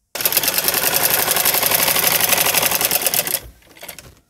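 Black domestic sewing machine running fast and evenly, stitching long basting stitches along a folded hem. It stops about three and a half seconds in.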